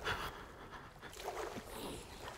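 Small waves lapping softly and irregularly against a stone jetty.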